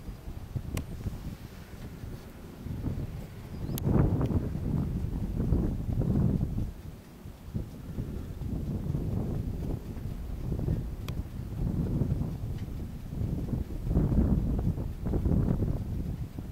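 Wind buffeting the camera's microphone, a low rumble that rises and falls in gusts, with a few faint clicks.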